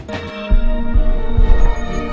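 Electronic intro music: held synth tones with a deep, throbbing bass pulse that comes in about half a second in.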